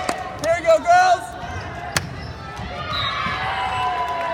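Volleyball in a gym: short shouted calls from players and spectators, one sharp smack of the ball about two seconds in, then a long drawn-out call from the crowd or players that slowly falls in pitch.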